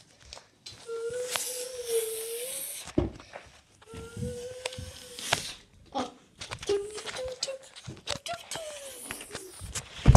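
A child's voice humming a held, slightly wavering note in several stretches of a second or two. Handling rustle and knocks come in between, and a louder knock falls near the end.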